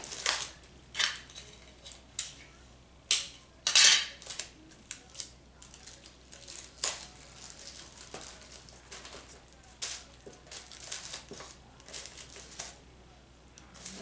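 Clear tape being pulled off the roll and pressed around cardboard boxes and tissue paper on a plastic mesh basket: irregular crinkles, rustles and short rasps. The loudest and longest comes about four seconds in.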